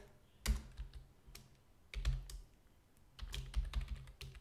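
Typing on a computer keyboard: a few separate keystrokes, then a quicker run of keys near the end.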